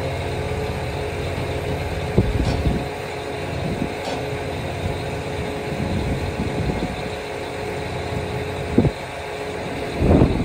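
An engine idling steadily, with a few brief knocks, one a couple of seconds in and another near the end.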